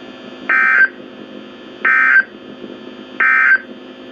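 A NOAA Weather Radio broadcast through a S.A.M.E. weather radio's speaker sends three short bursts of S.A.M.E. digital data tones about a second and a half apart. This is the end-of-message code that closes the weekly test. A steady radio hiss runs beneath the bursts.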